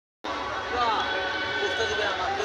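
Sound cuts in abruptly about a quarter second in, then a crowd of people chattering, many voices overlapping, with a steady high tone underneath.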